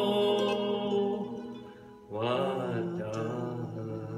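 Acoustic bluegrass string band, with fiddles, guitar and mandolin, holding a sustained chord that fades away about two seconds in. A new chord is then struck and rings on.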